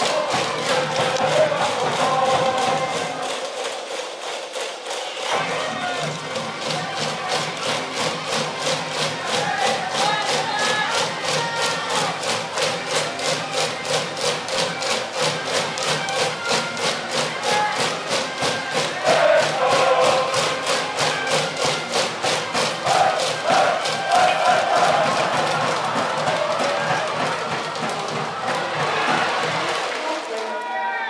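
Japanese high school baseball cheering section: a brass band plays a cheer tune over a steady, quick drum beat while the crowd of students chants and shouts along. The low drum beat drops out for about a second and a half around four seconds in, then comes back.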